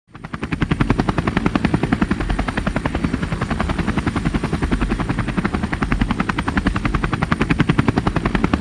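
A rapid, even chopping pulse, about a dozen beats a second over a low rumble, rising in over the first half second and then holding steady. It is an added intro sound effect with no speech over it.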